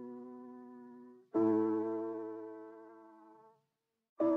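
Lo-fi music: sustained piano chords with no beat. A held chord fades out, a new chord is struck about a second and a half in and fades away, and there is a short silence near the end.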